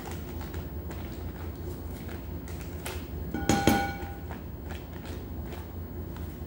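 Butter being scraped off its paper wrapper with a spatula into a glass bowl: soft scrapes and paper crinkles, with a short squeak about three and a half seconds in. A steady low hum runs underneath.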